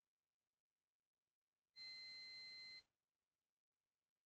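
A single electronic beep about a second long: one steady high tone that starts and stops abruptly, near the middle of otherwise near silence.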